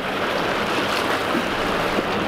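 Steady rush of churning white water pouring out below a dam spillway.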